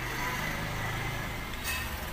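Steady low rumble of background noise, with a faint steady higher tone above it.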